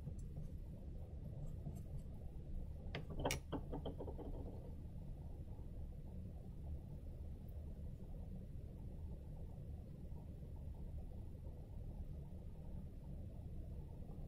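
Steady low room hum, with a brief cluster of light clicks about three seconds in.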